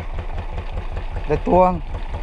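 Fishing boat's engine idling with a steady low throb of several even beats a second.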